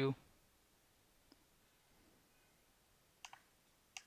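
A few faint computer mouse clicks: a single click about a second in, a quick double click near the end, and one more right at the end.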